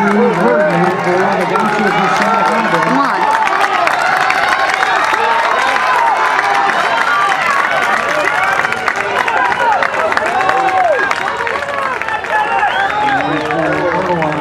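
Spectators yelling and cheering runners on through the finishing sprint, many voices overlapping, with some clapping.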